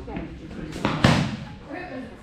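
Foam-padded boffer weapons clashing: a loud double thud, two hits in quick succession about a second in.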